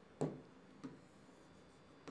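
Stylus pen drawing on an interactive touchscreen board: a short knock about a fifth of a second in and a fainter one just under a second in, with the room otherwise quiet.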